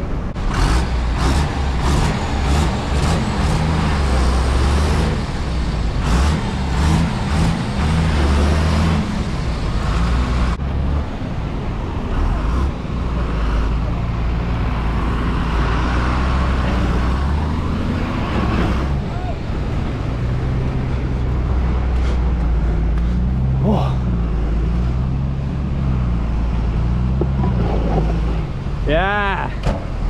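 Bus engine running hard under load as the bus works through deep mud and rocks, its pitch rising and falling with the throttle. A horn sounds near the end.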